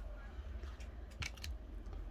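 Trading cards being handled: a few faint, soft clicks and slides as a card is slid off the stack and laid down on a wooden table, over a low steady hum.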